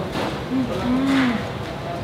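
A woman humming 'mm-mmm' with her mouth closed while chewing, in relish at the taste: a short hum, then a longer one that rises and falls.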